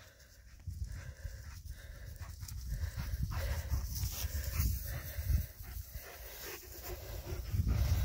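German Shepherd panting close by, over an uneven low rumble on the microphone that starts about a second in.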